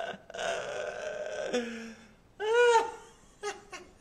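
A man laughing heartily: a long breathy laugh, then a short, loud cry that rises and falls in pitch about two and a half seconds in.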